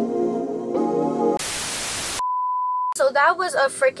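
Background music with sustained chords, cut off by about a second of loud static hiss and then a short, steady high beep; a woman starts talking near the end.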